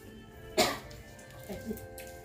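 A single short cough about half a second in, over steady background music.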